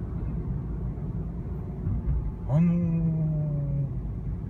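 Steady low drive noise inside the cabin of a Mazda Demio XD, a 1.5-litre diesel, moving through town traffic. About two and a half seconds in, a man gives one long hum, slightly falling in pitch, for about a second and a half.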